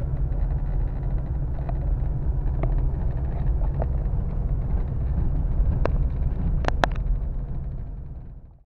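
Steady low rumble inside a car's cabin, with a few sharp clicks, the loudest two in quick succession near the end.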